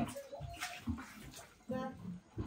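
Cow being milked by hand: a few short squirts of milk hitting a plastic pail.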